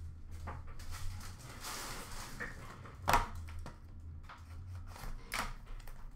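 Trading-card boxes and pack wrappers being rummaged in a plastic bin: scattered rustling and a couple of sharp clicks, over a low steady hum.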